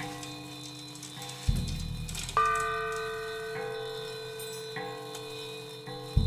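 Prepared drum kit played with extended techniques: a low drum thud about a second and a half in, then a louder metallic strike that rings on with several steady bell-like tones. Two lighter strikes follow over a held ringing drone.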